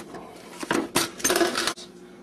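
Hard kitchen objects being handled and knocked together: a couple of clinks, then a short burst of clattering and rattling about a second in. A faint steady hum runs underneath.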